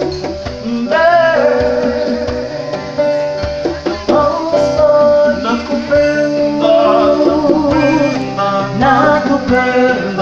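Live acoustic soul song: a woman singing over a strummed acoustic guitar and hand drums.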